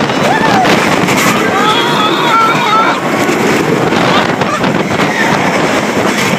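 Loud wind buffeting the microphone on a moving roller coaster, with riders screaming and yelling over it in wavering high voices.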